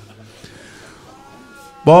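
A quiet pause in a mourning chant with faint drawn-out voice tones. Near the end a man's voice breaks in loudly, starting a new sung line of the lament.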